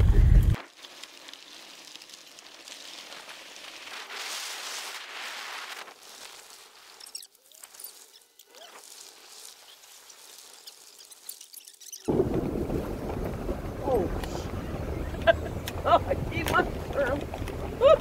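Low rumble of a car driving up a gravel mountain road, heard from inside the cabin. It drops away suddenly half a second in, leaving only a faint hiss, and comes back strongly about twelve seconds in.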